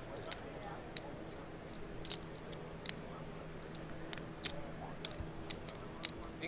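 Poker chips clicking as they are handled at the table: scattered sharp clicks, several a second and irregular, over a faint murmur from the crowd and a steady low hum.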